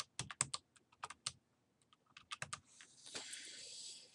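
Computer keyboard keys clicking in a quick run as grades are typed in with number keys and the down arrow, with a short pause before a second cluster of clicks. A soft hiss follows near the end.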